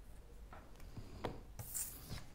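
Cards being handled on a wooden table top: a few short rubbing scrapes, the loudest a hissy slide near the end.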